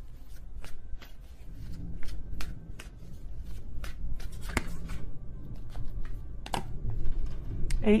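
A deck of tarot cards being shuffled by hand, with irregular snapping clicks and slaps of the cards.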